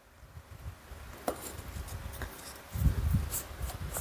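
A long drill bit being handled and fitted into the chuck of a Hilti TE 70 combi hammer: a few light metallic clicks, then duller knocks about three seconds in.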